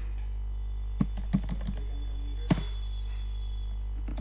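Computer keyboard keys clicking as a short command is typed: a quick run of key presses, then one sharp key press about halfway through. Under it runs a steady electrical hum with a faint high whine.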